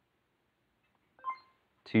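Near silence, then about a second in a short electronic beep marks the end of a quiz countdown timer and the answer reveal, followed by a voice saying "two" at the very end.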